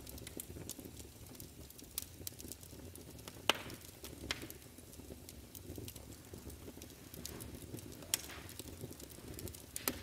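Fire crackling in a fireplace: a steady low rumble of flames with a few sharp pops, the loudest about three and a half seconds in.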